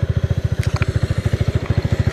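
Honda CB 300R's single-cylinder four-stroke engine idling: an even, rapid putter of about a dozen beats a second.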